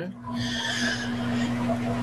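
A steady hiss lasting about a second and a half, over a low steady hum.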